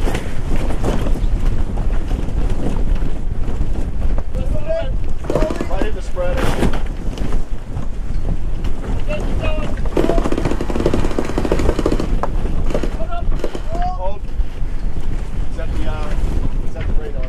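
Strong wind buffeting the microphone aboard a sailboat under sail, a dense steady rumble with short snatches of raised voices in the background.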